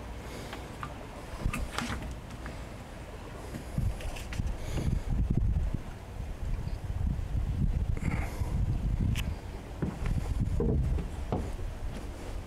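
Wind buffeting the microphone as a low rumble that grows stronger about four seconds in, with a few scattered knocks of handling noise.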